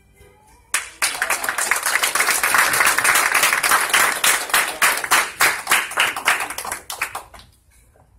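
A crowd applauding. The clapping breaks out suddenly about a second in, stays dense and loud, then thins to scattered claps and stops near the end.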